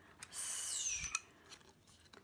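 Metal corner punch being handled: a short scraping squeak that falls in pitch, ending in a sharp click about a second in.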